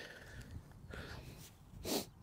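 A short, sharp sniff near the end over a faint low rumble of wind on the microphone.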